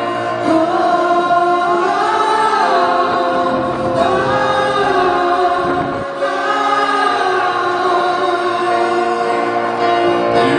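Live band music with a male singer holding long, slowly gliding sung notes into a microphone, backed by full, choir-like massed voices and keyboards. The loudness dips briefly about six seconds in.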